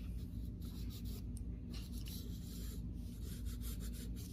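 Graphite pencil scratching across drawing paper in a series of short, irregular strokes, over a steady low hum.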